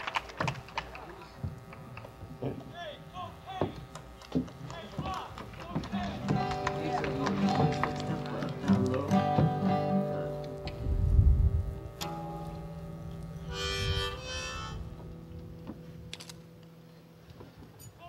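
Acoustic guitar strings being picked and strummed, with held notes ringing, and a short harmonica blow about three quarters of the way through. A low thump sounds around eleven seconds in, with a murmur of voices underneath.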